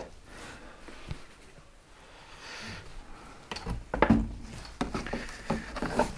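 Someone rummaging through items on a shelf in a small shed: faint handling and rustling, then several light knocks and clatters in the second half as objects are moved.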